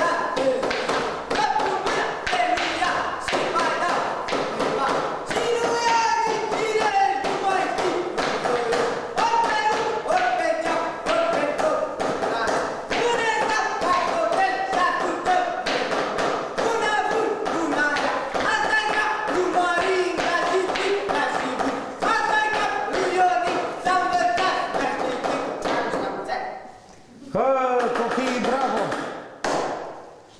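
Rapid, steady wooden knocking and stamping from a goat-costume (capra) dancer's clacking jaw and feet on a tiled floor, with people's voices calling and chanting over it. The knocking stops a few seconds before the end.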